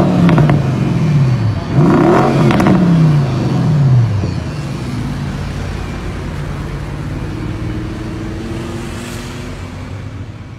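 Bentley Continental GT engine and exhaust being revved: the revs fall away from a blip at the start, then a second sharp blip about two seconds in drops back over the next two seconds. It then settles to a steady idle that slowly fades.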